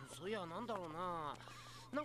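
Speech only: an anime character's voice speaking Japanese, a little quieter than the surrounding talk.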